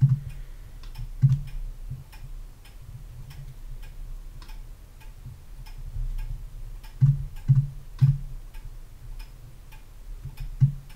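Computer keyboard and mouse clicks, irregular and a few per second, with a few louder low thumps, the loudest near the start and a cluster of three around seven to eight seconds in. A steady low hum runs underneath.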